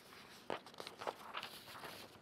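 Faint handling noise from paper notes held near a headset microphone: soft rustling with about half a dozen light, irregular clicks and knocks.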